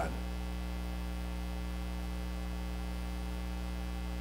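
Steady electrical mains hum, with no other sound over it.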